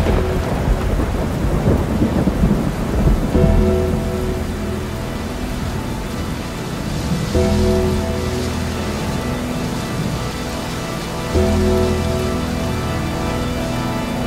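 Thunderstorm sound effect: steady rain with rolling thunder, loudest in the first few seconds. Low, held chords of dark music come in and out about every four seconds underneath.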